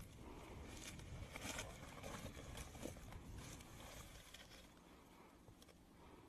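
Faint rustling of footsteps pushing through tall dry grass, irregular and fading away towards the end.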